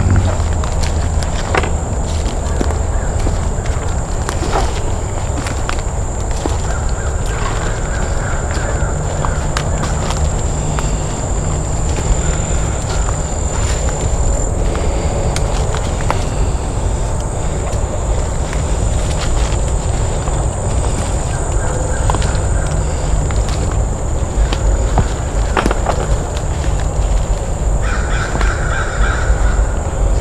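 Crows cawing in short bouts, a few times, calling out the people walking through the woods. Under them is a steady low rumble and scattered light crackles of footsteps on the forest floor.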